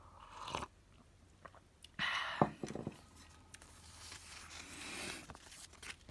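Paper sticker sheets and planner pages being handled close to the microphone: crinkling and rustling in a few short bursts, the loudest about two seconds in.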